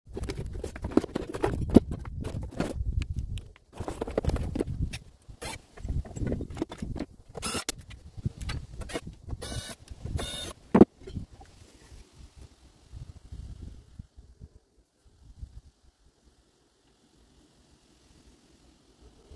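Cardboard packaging rustling and being handled, then a cordless impact driver running in a few short bursts, about halfway through, as it backs out the screws of a metal charge-controller cover. Light knocks and handling follow and die away.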